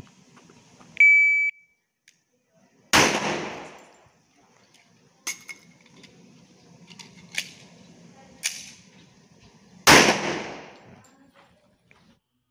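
A shot timer beeps once about a second in, then a pistol fires a single shot about three seconds in, its report echoing for about a second. A few light clicks and clacks of a reload follow, and a second shot comes near the end.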